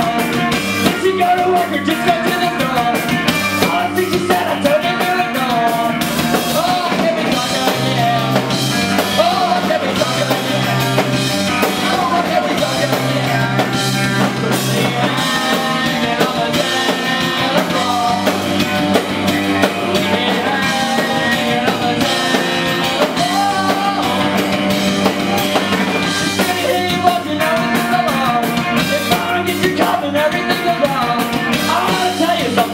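A live rock band plays loud with electric guitars and a drum kit, the drums hitting steadily throughout and low sustained notes coming in about a third of the way through.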